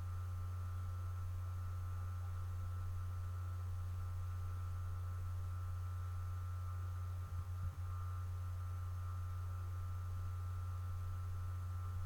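Steady low electrical hum with fainter steady higher tones above it, and a brief small crackle about seven seconds in.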